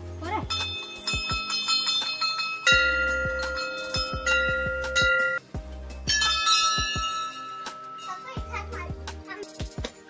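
Background music: a steady beat with deep bass pulses and high, bell-like chiming notes.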